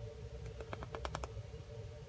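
Paper instruction booklet being handled, giving a quick run of about eight to ten small, crisp clicks from about half a second in to a little past one second, over a faint steady hum.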